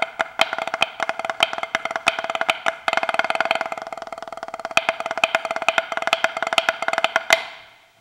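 Drumsticks playing fast rudimental patterns on a practice pad with no snare unit: a dense stream of dry, woody taps with louder accents, softer in the middle and dying away just before the end.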